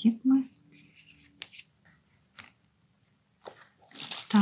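A few faint rustles and light taps of hands handling a paper card with a ribbon bow on a tabletop, after a brief trailing bit of speech at the start.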